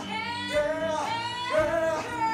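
A young woman singing in a musical-theatre style, holding long high notes in a few phrases that swoop up and down in pitch.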